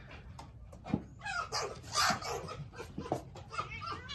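Two red foxes squabbling through a wire fence: a string of short, shrill yips and squeals in several bursts, the strongest about one and two seconds in. The calls are a hostile exchange between foxes that do not get along.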